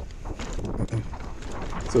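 Mountain bike rolling down a hardpacked dirt trail: a steady rush of tyre noise and wind on the microphone, with scattered small rattles.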